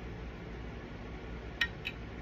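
Two light clicks about a quarter of a second apart near the end, from wooden toothpicks being handled with the fingernails, over a steady low room hum.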